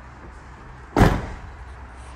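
Fiat Ducato motorhome cab door shut about a second in: a single heavy slam that dies away quickly.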